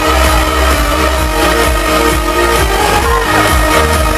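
Electronic dance music from a DJ set playing loud over a concert sound system, with heavy bass and a steady beat.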